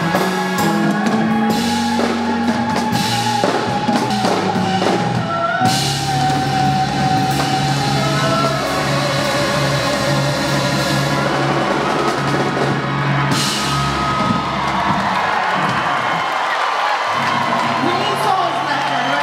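Live soul band with drum kit playing long held chords under a woman's sung vocal line, with cymbal crashes twice.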